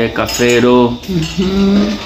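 A man's voice talking in long, drawn-out syllables.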